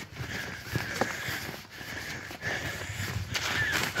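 Footsteps on a rocky dirt path, an uneven series of short steps.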